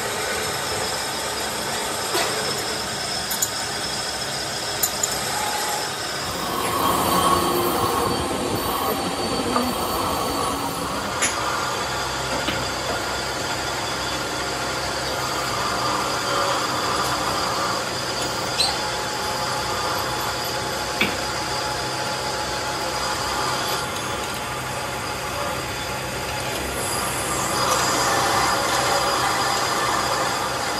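Steady metalworking machinery noise with thin high whining tones over it and a few sharp clicks, a little louder for a few seconds early on and again near the end.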